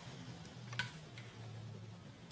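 Quiet room tone with a low steady hum and two faint short clicks a little under a second in and just after it.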